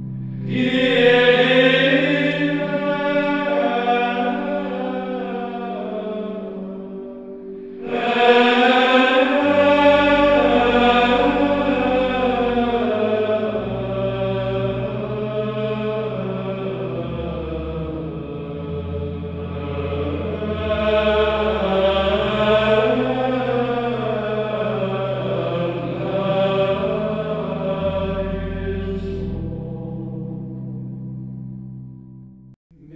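Sacred chant: a sung melody over a steady held low drone, with new phrases starting about a second in and again about eight seconds in.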